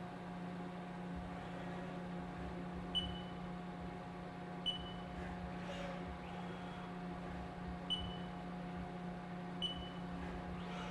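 Haas TM-1p CNC mill running a probing cycle: a steady machine hum with four short high beeps, in two pairs about a second and a half apart.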